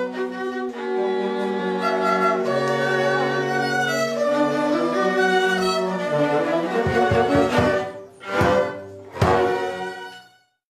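A youth string ensemble playing violins and cellos made from recycled trash, such as cans and baking trays, in a slow melody of held, overlapping notes. Near the end the playing breaks into a few sharp, accented strokes and then stops.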